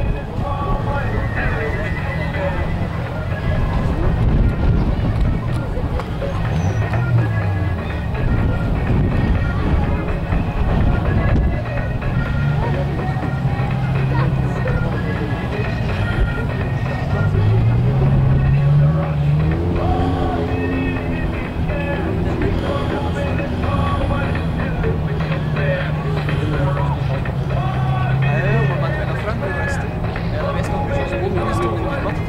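Race-venue din: a steady low rumble of car engines, with indistinct voices and music mixed in. A pitched engine note rises briefly about two-thirds of the way through.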